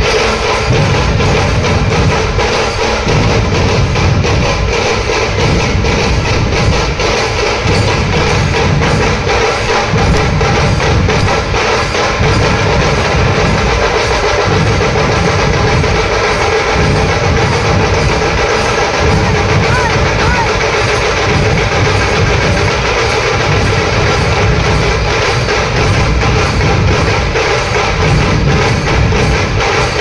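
A dhol-tasha troupe playing loud and without pause: many barrel dhols beat a fast, steady rhythm under sharp, rapid cracks from the small tasha drums.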